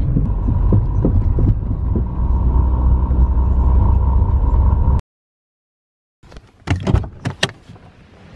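Low, steady engine and road rumble inside a moving car, cutting off abruptly about five seconds in. After a second of silence come a few sharp knocks and clicks.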